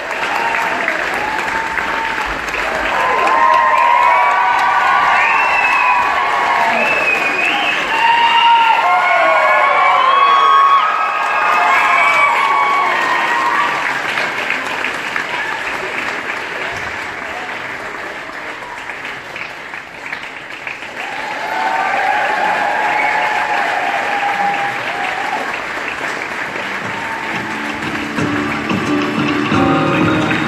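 Audience applauding steadily, with many high whoops and calls from the crowd over the clapping through the first half. Music starts up near the end.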